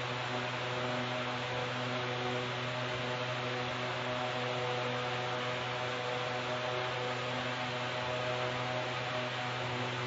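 Steady electrical hum with several fixed tones over a constant hiss.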